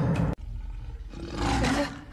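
A lion roaring, a low, rough roar that starts after a sharp cut about a third of a second in and grows louder about a second and a half in.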